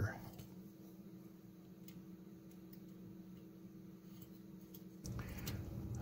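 Quiet steady hum with a few faint ticks from resistors being handled and fitted into a circuit board. A louder rustle starts about five seconds in.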